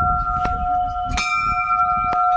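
Hanging brass temple bell rung by hand, ringing on in a long steady tone. It is struck again a little over a second in, with a few faint knocks underneath.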